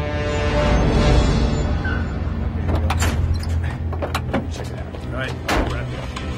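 Film soundtrack mix: tense background music over a vehicle engine running low and steady, with a few sharp clicks partway through.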